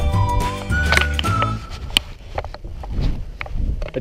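An alarm playing a short melody of held, stepped notes over a bass line, which stops about a second and a half in. A sharp click and a few fainter clicks follow.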